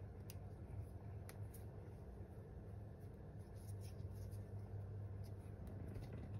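Faint rustling and a few small clicks as fresh rosemary leaves are stripped from their sprigs by hand over a saucepan, with a steady low hum underneath.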